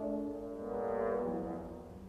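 Orchestral music: slow, sustained chords that swell about a second in and then fade.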